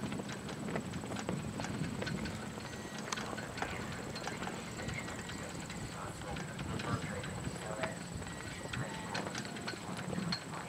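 Hooves of a horse walking on arena footing, an irregular series of soft footfalls, with indistinct voices of people in the background.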